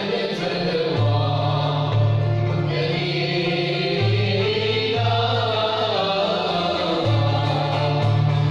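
Andalusian classical music ensemble performing live: a chorus of voices singing together over bowed strings (violins and cello) and plucked lutes such as ouds and mandolins. The bass notes shift step by step every second or so under the melody.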